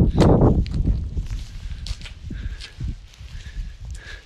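Wind buffeting the microphone in gusts, a loud low rumble in the first half second, then weaker gusts, with a few soft footsteps on sand.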